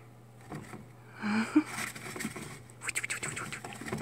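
A chinchilla rolling in bathing dust inside a plastic dust-bath house: scratchy rustling and pattering of dust against the plastic, in a burst about a second in and a quicker run of scratches near the end.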